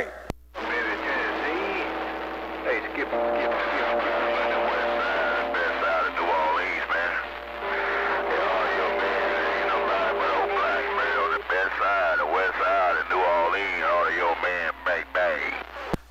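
An incoming transmission heard through a CB radio's speaker: a garbled, static-laden voice with steady whistling tones over it. It opens with a click and cuts off suddenly at the end, when the other station unkeys.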